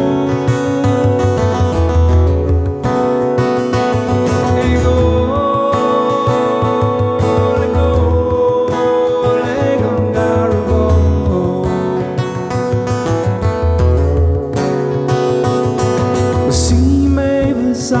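Irish folk music: a strummed acoustic guitar over the steady deep beat of a bodhrán played with a tipper.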